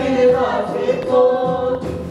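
A small group of voices singing together in harmony, holding long notes, with a brief break near the end.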